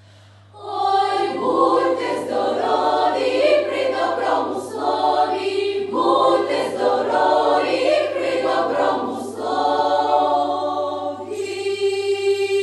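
Children's choir singing a Ukrainian carol arrangement: after a brief pause, the choir comes back in with quick rhythmic phrases, then settles on a long held chord near the end.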